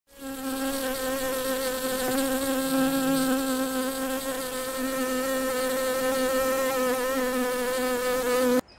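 A honeybee buzzing steadily and close up, one even drone with a slight waver in pitch.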